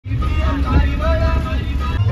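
Steady low rumble of a passenger van's engine and road noise heard from inside the cabin, with people's voices over it.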